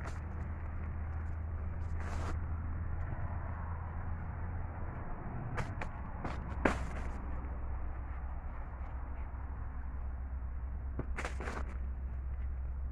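Pequi fruit and a white woven plastic sack handled at close range: a few brief rustles and clicks, with the sharpest just past the middle and a pair near the end. Under them runs a steady low rumble.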